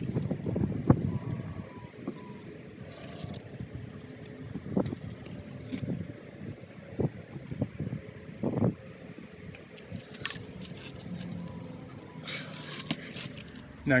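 Handling noise of PVC pipe fittings: rustling at first, then a few separate short knocks as the plastic pieces are picked up and set down on cardboard.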